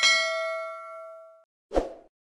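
Notification-bell 'ding' sound effect: one bright bell-like chime that rings and fades out within about a second and a half. A short thump follows near the end.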